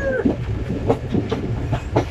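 Passenger train running, heard from inside a carriage by an open window: a loud steady rumble with a few sharp wheel clacks over the rail joints.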